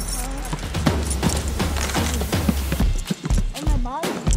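Basketball bouncing on an outdoor asphalt court: a string of irregular sharp thuds as it is dribbled and passed, with players' voices calling out and a low rumble of wind on the microphone.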